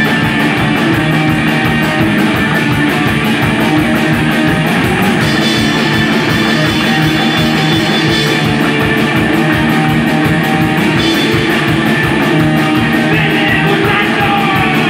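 A live rock band playing at full volume: upright double bass, electric guitar and drum kit driving a fast, steady beat, with no break.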